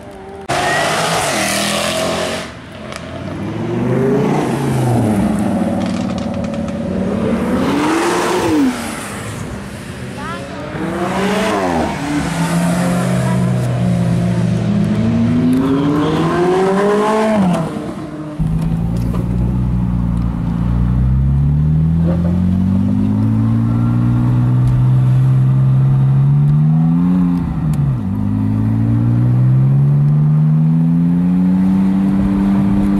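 Sports car engines revving and passing close by, their pitch sweeping up and falling away several times. About two-thirds of the way through, the sound changes to one car's engine heard from inside the cabin, its pitch rising steadily as it accelerates, dipping at a gear change and climbing again.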